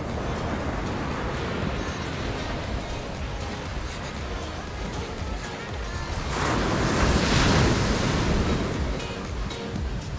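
Ocean surf washing onto a sandy beach, a steady rush with one louder wave swelling about six seconds in and fading away about two seconds later. Background music plays underneath.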